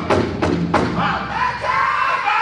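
Powwow drum group's big drum beaten at about three strokes a second, the beats stopping about three-quarters of a second in; a high singing voice then starts and holds.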